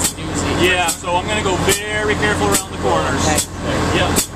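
People talking over a steady low engine hum.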